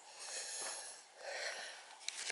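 A person breathing close to the microphone: two soft breaths, each about a second long.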